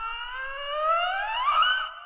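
A siren-like sound effect: one long tone with several overtones rising steadily in pitch, levelling off about one and a half seconds in, then fading.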